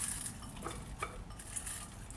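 A few faint clinks of a ceramic bowl knocking against a glass mixing bowl as shredded chicken is tipped in.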